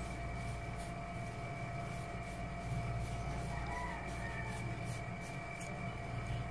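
Steady room hum from a running air conditioner, with two faint steady tones over it. There are faint light clicks and rustles as a lavalier mic's battery module and cable are handled.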